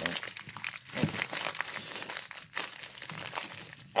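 Plastic package wrapping crinkling and crackling in irregular bursts as it is pulled and torn at by hand to get it open.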